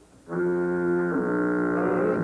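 Brass-like musical sting cued by pulling the jail chain, marking the crook being locked up: a held chord starts about a third of a second in, and its upper notes step down to a lower chord halfway through.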